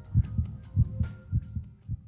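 Low thumps in pairs in a heartbeat rhythm, a lub-dub about every 0.6 seconds, over a faint steady hum.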